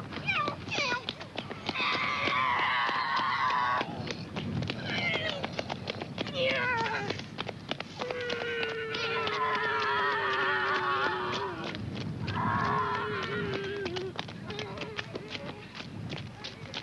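Boys' voices imitating aircraft engines: several long droning calls, one of them a slow falling 'neeow', with many short clicks in between.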